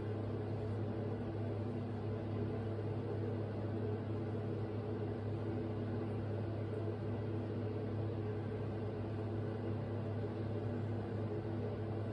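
A steady low hum with a faint hiss that stays even and does not change.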